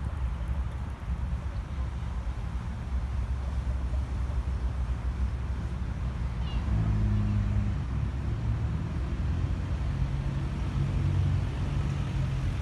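Low, steady engine rumble of an idling motor vehicle, growing stronger about seven seconds in.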